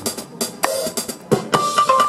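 Jazz played on a MalletKAT Pro electronic mallet controller sounding as a vibraphone, with drums: quick mallet strokes and drum hits, then a held high note starting about one and a half seconds in.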